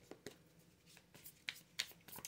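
A few faint, sharp clicks in a quiet room, the two clearest close together about a second and a half in.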